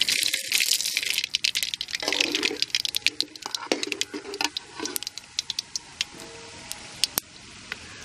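Split yellow dal poured into hot oil with mustard seeds in an aluminium kadai, sizzling and crackling with many sharp pops, then stirred with a perforated metal skimmer that scrapes on the pan. The sizzle settles to a quieter steady hiss about halfway through, with occasional pops.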